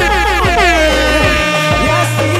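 DJ air horn sound effect fired from the VirtualDJ sampler over a playing song. The horn drops in pitch through its first second and then holds a steady blare, with the song's beat underneath.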